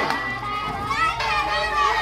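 A group of children talking and calling out at once, many overlapping voices.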